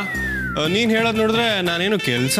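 A voice drawing out one long, wavering, whiny-sounding cry over background music, after a short falling tone.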